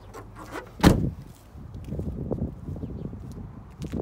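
The SUV's rear liftgate being shut by hand: one sharp thud with a short ringing tail about a second in. Then irregular low scuffs and knocks of footsteps and handling noise.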